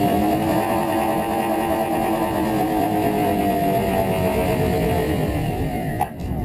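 Twin electric motors and propellers of a Skywalker RC plane, recorded onboard, whining under wind rush; the pitch slowly falls and the sound cuts off abruptly at the end.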